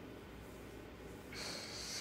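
Faint room hum, then, about one and a half seconds in, a person draws in a breath for about half a second, just before speaking.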